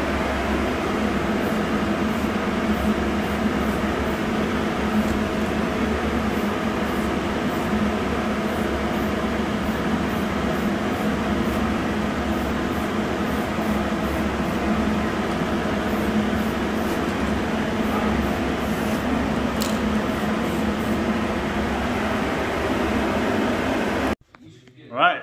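Steady drone of a running machine with a low hum, at an even level, with faint scattered ticks over it.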